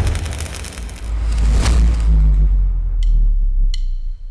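Cinematic sound-design hit from a TV show's intro: a heavy boom at the start, then a deep sustained rumble with a swoosh about a second and a half in, and a couple of short high ticks near the end.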